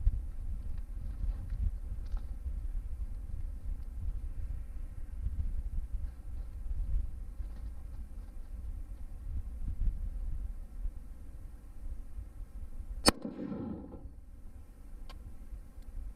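A single rifle shot about thirteen seconds in, sharp and followed by a short echo, over a steady low rumble of wind on the microphone.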